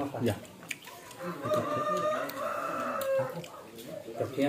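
A rooster crowing once, a long held call of about two seconds starting a little over a second in.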